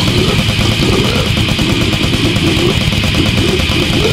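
Brutal death metal / goregrind recording: heavily distorted guitars and bass over fast, dense drumming, loud and relentless throughout.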